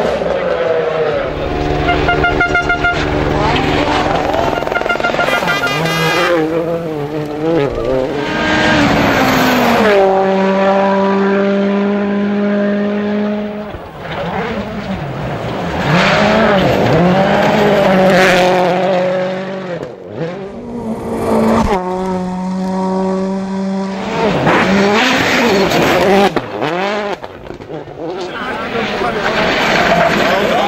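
Rally cars at full stage pace, one after another. Their turbocharged four-cylinder engines rev up and down through gear changes, with a few stretches held at steady high revs.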